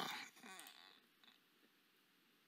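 The tail of a drawn-out spoken "uh" fading out, then near silence: room tone.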